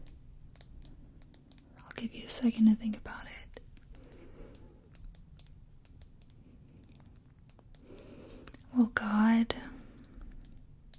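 A woman's soft-spoken voice close to the microphone: two short phrases, about two seconds in and near the end, with faint clicks between them.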